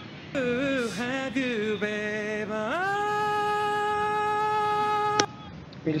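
Recorded male voice singing an R&B phrase, then sliding up into a long held high note of about two and a half seconds that cuts off suddenly. The note is strained, sung with effort at the very top of the singer's range.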